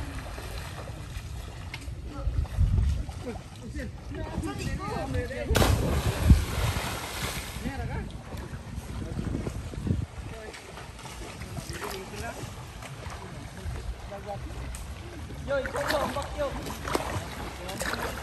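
Distant voices and calls of people swimming in a river, heard over a low rumble of wind on the microphone, with a brief sharp burst of noise about five and a half seconds in.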